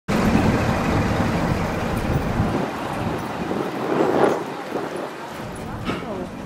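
Road vehicle engine running close by, a low rumble that thins out about halfway through, with people's voices in the background.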